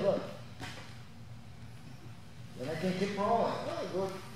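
A man's voice speaks again in the last second and a half. Before that comes a quieter stretch with faint rustling and a soft knock as a body in a cotton gi moves and rolls on a foam grappling mat.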